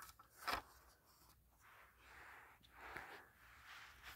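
Faint handling of a plastic SA303 smoke detector: one short sharp click about half a second in, then a few faint scrapes.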